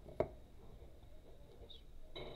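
A quiet pause with one short, sharp click a fraction of a second in, then faint noise from a hand handling a coloring book's pages.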